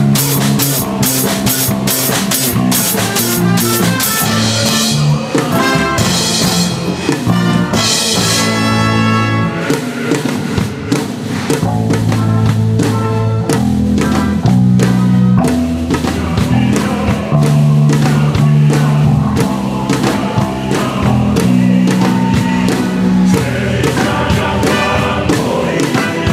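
Live band music: an electric bass guitar plucked fingerstyle plays a moving bass line, with drum kit and cymbals and the rest of the band and orchestra behind it.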